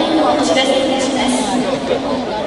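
A large crowd talking at once: many overlapping voices in the stands, with no single voice standing out.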